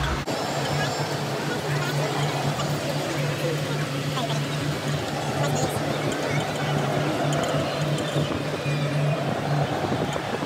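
Ambient noise in a moving aerial skyway gondola cabin: a steady background with a low hum that pulses on and off, and faint voices mixed in.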